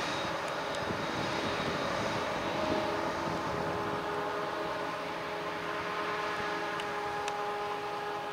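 Claas Jaguar 840 self-propelled forage harvester working a grass swath, its engine and chopping gear giving a steady drone with a few steady whining tones, and a tractor running alongside. A few faint ticks sound over it.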